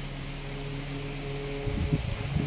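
Steady low hum of a running electric motor, with a few low bumps near the end.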